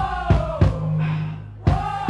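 Live rock band: drum hits under a long sung "whoa" that holds and then slides down in pitch, sung by the women in the audience in a call-and-response singalong.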